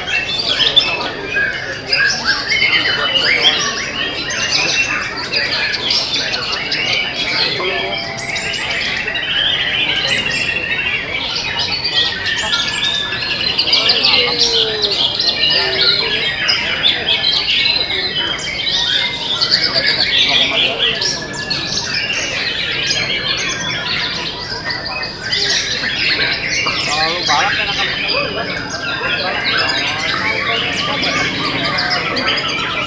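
Several caged white-rumped shamas singing at once, a dense, unbroken jumble of rapid, varied whistled phrases and trills with no pause.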